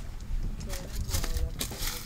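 Soft clothing rustles and scuffs as a person steps out of a car and pulls on a knit cardigan, over a low rumble.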